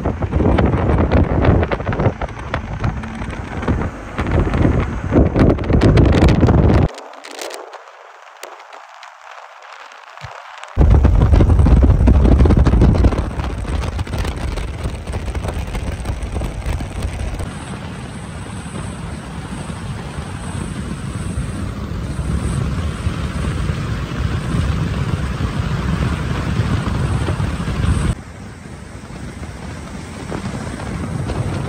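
Wind buffeting the microphone and road noise from a moving car, gusty and loud at first. A much quieter stretch comes about seven seconds in, then the noise settles into a steadier drive.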